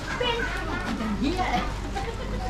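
Market crowd chatter: many overlapping voices of shoppers and vendors talking at once, some of them high-pitched.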